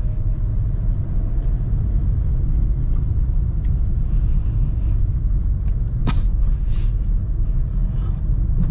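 Steady low rumble of a manual Honda Brio's engine and tyres, heard inside the cabin while it drives slowly in gear.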